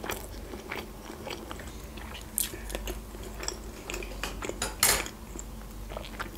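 Close-miked chewing of sushi rolls: soft wet mouth clicks throughout, with two louder clicks about two and a half and five seconds in.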